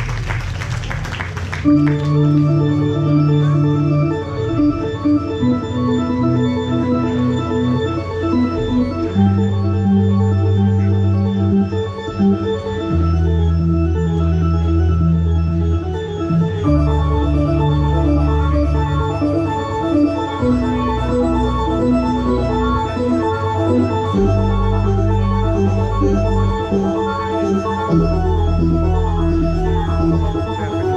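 Applause dies away at the start. Then come sustained, organ-like electronic keyboard chords over a low bass note, changing every two to four seconds with no drums.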